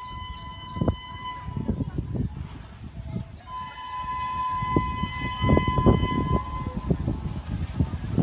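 WAP-7 electric locomotive horn sounding twice as the train approaches at speed: a steady blast of about a second and a half, then a longer one from about three and a half seconds to seven seconds in.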